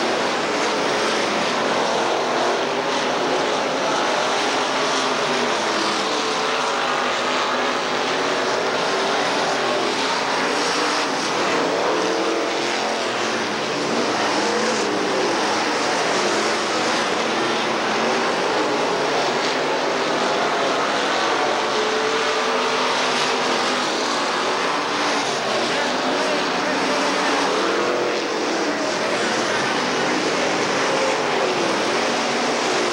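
Dirt late model race cars' V8 engines running hard around a dirt oval. Several engines overlap at once, their pitch rising and falling continuously as the cars throttle through the turns and pass by.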